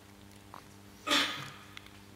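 A man's short, breathy intake of breath about a second in, over a faint steady hum.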